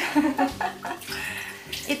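Canning liquid being poured out of an opened tin can into a kitchen sink: a steady run of splashing water starting about a second in.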